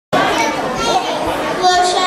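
Children's voices talking.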